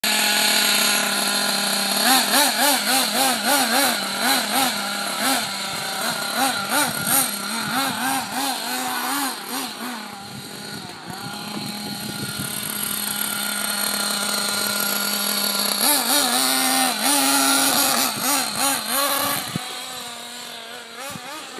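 Nitro engine of a Kyosho Inferno MP7.5 1/8-scale RC buggy running, its throttle blipped in quick repeated revs. It settles to a steadier, quieter drone mid-way and then revs in short blips again near the end.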